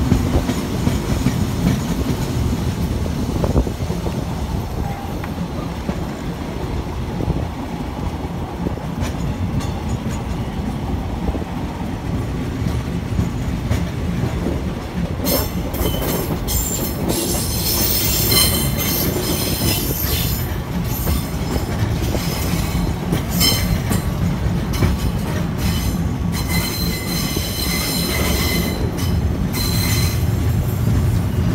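THN/NKF diesel railcar running along the track with a steady low rumble. From about halfway through, a high-pitched metallic wheel squeal comes and goes as the train rounds a curve.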